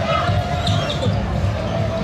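A steady thumping low beat repeats several times a second, with a held note over it in the first second.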